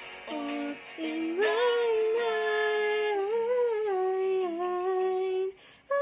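A woman singing, holding long notes that bend up and down in pitch, with a short break near the end.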